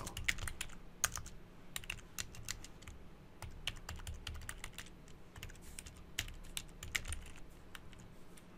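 Typing on a computer keyboard: irregular key clicks with short pauses between bursts of keystrokes.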